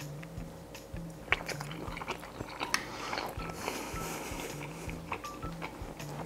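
A person chewing a mouthful of shrimp and rice, with small wet clicks and crunches, over quiet background music with a repeating low bass line.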